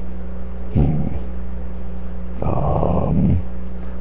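A man voicing a dog puppet with low dog-like growls, twice: a short one about a second in and a longer one in the second half. A steady low electrical hum runs underneath.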